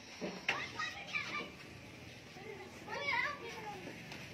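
Faint children's voices calling out in the background, with a louder high call about three seconds in.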